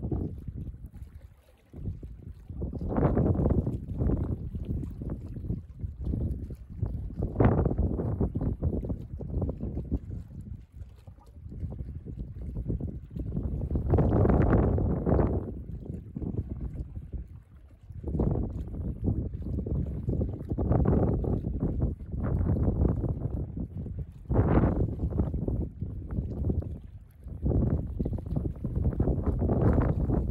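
Gusty wind buffeting the microphone, rising and falling in irregular gusts every few seconds.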